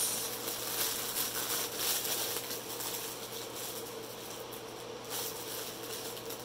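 Clear plastic bag of small diamond-painting drill packets rustling and crinkling as it is handled. The rustling is busiest in the first couple of seconds, with another flurry about five seconds in, over a faint steady hum.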